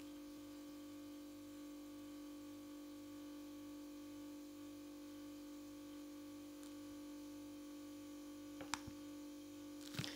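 Quiet room tone with a steady faint hum, and a single faint click a little before the end.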